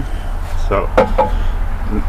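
A single sharp knock about a second in: a small sledgehammer striking an ash board laid over a cylinder liner, driving the liner into the engine block. A low steady hum runs underneath.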